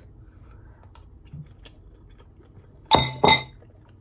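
Two quick clinks of a metal utensil against a ceramic bowl near the end, a third of a second apart.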